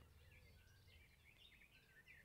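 Near silence outdoors, with faint distant birdsong: short, thin chirps scattered throughout.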